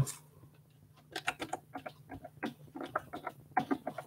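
Irregular light clicks and taps of typing on a keyboard, starting about a second in, several a second.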